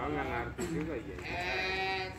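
A voice chanting an Arabic prayer in long, wavering melodic phrases, with held notes.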